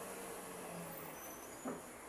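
A car driving slowly past with a low engine hum that fades out a little past a second in, over steady street noise. A short knock comes near the end.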